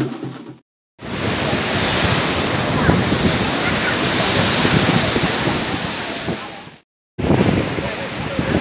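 Steady wash of sea surf breaking on a sandy beach, mixed with wind on the microphone. It starts abruptly about a second in and cuts off abruptly just before the end.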